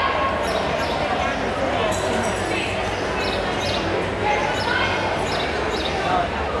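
Busy hall ambience at a roller derby bout: indistinct voices and the steady rumble and knocking of roller skates on the flat concrete track, echoing in a large room.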